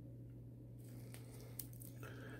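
Faint handling sounds of gloved fingers on a small circuit board and its metal housing: soft rubbing with a few small clicks from about a second in as the board is turned over, over a steady low electrical hum.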